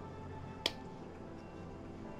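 A single sharp click about two-thirds of a second in, over faint steady background music.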